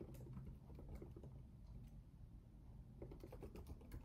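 Faint typing on a laptop keyboard: scattered soft key clicks that grow busier near the end.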